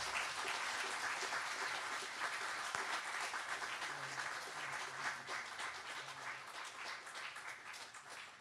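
Audience applauding, a dense steady patter of many hands that slowly thins out in the last few seconds.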